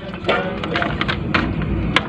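Soy sauce squeezed from a plastic pack onto pork ribs in a steel bowl, heard as a few light clicks and crinkles over a steady low background rumble.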